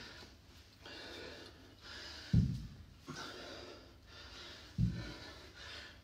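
A man breathing with effort through repeated dumbbell snatches, with two dull low thuds about two and a half seconds apart as the dumbbell is set down on the gym floor between reps.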